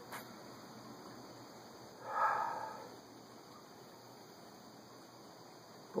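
A single nasal sniff about two seconds in, under a second long, as a man smells an unlit cigar held under his nose.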